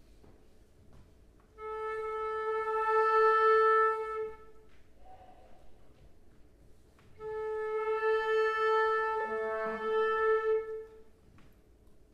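Flute and clarinet duo playing slow contemporary music: a long held note, a pause of a couple of seconds, then a second long held note with other short notes joining near its end.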